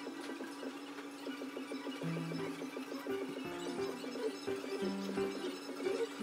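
Background music: a soft melody of short repeated notes over a steady held tone.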